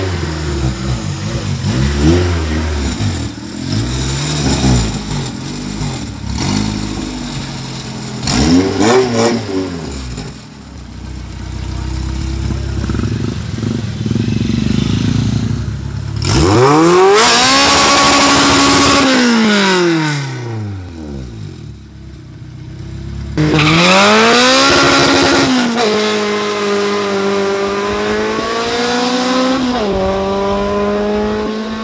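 Honda EK Civic's naturally aspirated K24 four-cylinder being revved in short blips, then pulling away with two long, loud climbs and falls in engine pitch in the second half.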